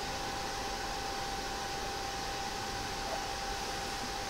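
Steady room noise: an even hiss with one faint, thin steady tone above it, and no other events.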